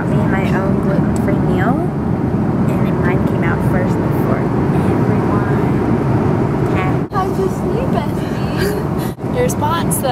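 Airliner cabin noise in flight: the steady low rumble of engines and air, with faint chatter of passengers. The noise briefly dips twice in the second half.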